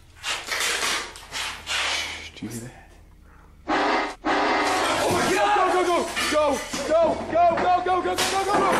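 Scuffling noise, then a brief held note from a toy accordion about four seconds in, followed by loud, continuous panicked yelling.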